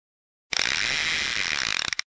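Film projector clattering sound effect. It starts suddenly about half a second in and stops abruptly about a second and a half later.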